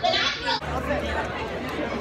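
Indistinct chatter of several people in a crowded indoor hall, with a low rumble through the middle of it.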